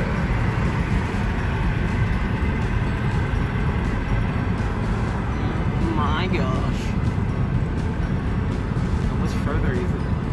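Steady low road and engine rumble inside a moving car's cabin, with a brief wavering voice-like sound about six seconds in and again near the end.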